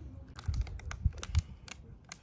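Fingers tapping and handling a smartphone: a handful of quick, light clicks, a few of them with soft thumps.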